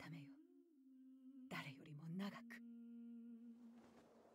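Faint episode soundtrack: a steady low held tone runs through, with a voice speaking briefly about one and a half seconds in.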